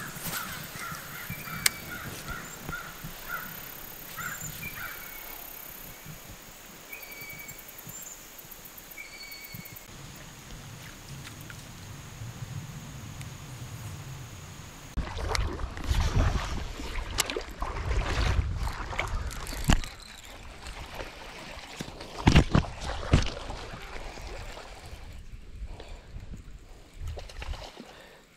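Birds calling at intervals over the first ten seconds or so, then, from about halfway through, footsteps sloshing and splashing through shallow creek water.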